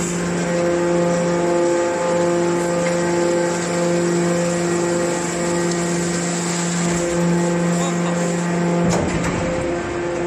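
Hydraulic power unit of a scrap metal baler running with a steady hum while the press compacts steel turnings, its pitch shifting slightly twice. A short knock near the end.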